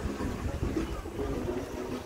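Low, uneven rumble of wind buffeting the microphone and ride noise from an electric unicycle rolling over paving stones, with a faint murmur of distant voices.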